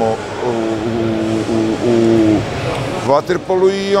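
A man's voice drawing out a long hesitation sound held on one pitch for about two seconds, then carrying on speaking near the end.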